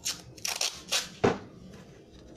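A plastic cake stencil being smoothed and pressed down by hand against an iced surface: several short rubbing and scuffing strokes, the loudest a little past the middle.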